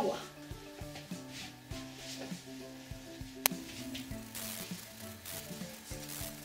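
Hands smoothing and rubbing damp fabric flat over a cotton towel, a soft brushing hiss that comes and goes, with light knocks and one sharp click about three and a half seconds in. Quiet background music plays underneath.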